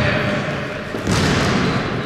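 A basketball being dribbled on a sports-hall floor, with thuds and players' footsteps, in a reverberant gym.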